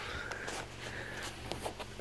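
Quiet background noise, a low steady hum with a few faint soft clicks in the second half.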